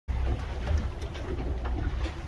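Steady low rumble aboard an offshore sportfishing boat, with a few faint ticks over it.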